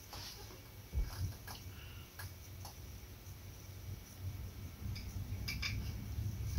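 Faint handling sounds: a few light clicks and taps as a small glass hot-sauce bottle is tipped and handled over a plastic tasting stick, over a low room rumble.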